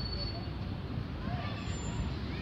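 Steady low outdoor rumble with faint distant voices; no ball strikes.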